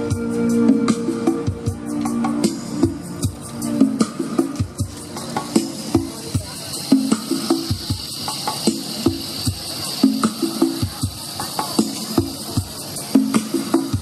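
Andean pan flute holding a final note over a backing track with a steady drum beat; the flute stops about two seconds in. Then a rainstick's hissing patter of falling pellets over the continuing beat.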